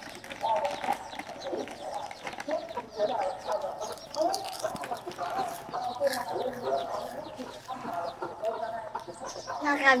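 Chickens clucking repeatedly in short, separate calls, with faint crunches of a crisp snack being chewed.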